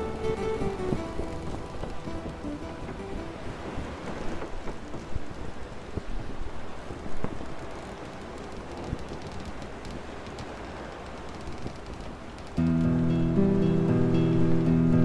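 Instrumental pirate-style music fades out over the first couple of seconds, leaving a sailing-ship cabin ambience of steady waves, rain and wind with one sharp knock about halfway through. Near the end, a new instrumental track starts suddenly and loudly.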